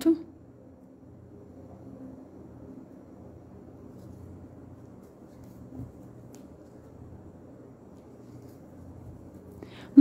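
Faint low rustling of t-shirt yarn being worked with a crochet hook over quiet room noise, with one soft knock about six seconds in.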